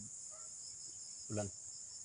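Steady, high-pitched chirring of field insects in chorus.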